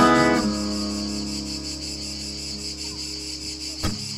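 A fingerpicked acoustic guitar chord struck at the start rings out and slowly fades, with a fresh note plucked near the end. Cicadas buzz steadily throughout.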